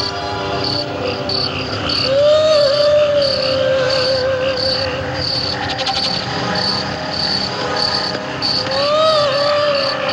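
Cricket chirping, about two short high chirps a second, over an instrumental passage of a film song. The passage has a long held melody note that swells and bends in pitch about two seconds in, and again near the end.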